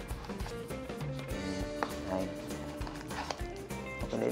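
Background music with held notes over a light, steady beat.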